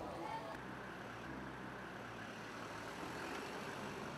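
Street traffic ambience: a motor vehicle engine runs steadily at low revs, its hum setting in about half a second in, with faint voices of passersby in the background.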